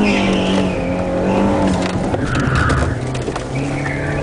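Competition car's engine heard from inside the cabin, held at steady high revs and then dropping to a lower, steady pitch about two seconds in, with tyre squeal as the car turns through the course.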